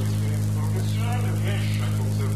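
Steady electrical hum, the loudest sound, with a faint indistinct voice underneath it.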